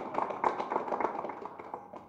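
Applause from a small group of people, many overlapping hand claps that die away toward the end.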